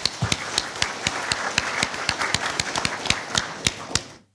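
Audience applauding: many hands clapping at once, fading out near the end.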